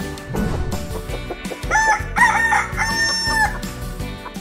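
A rooster crowing cock-a-doodle-doo, starting about halfway through in several pitched notes with the last one held longest, over a music jingle.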